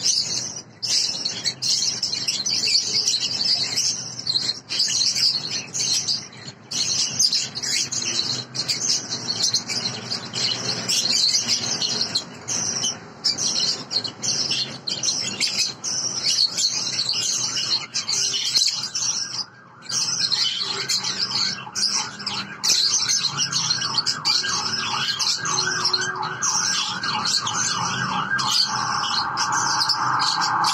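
Masked lovebirds chattering with fast, shrill chirps. From about two-thirds of the way in, a rapid, even pulsing sound joins and grows louder toward the end.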